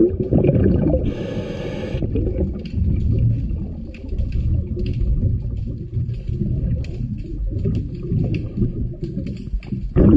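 Underwater sound of a diver's breathing: exhaust bubbles gurgling in a low, uneven rumble, with a brief higher hiss about a second in.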